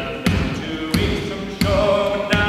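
A cappella men's group singing a sea shanty in close harmony over a steady percussive beat, about three hits every two seconds.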